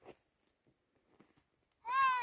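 Near silence, then near the end a long, high, clear-pitched call begins.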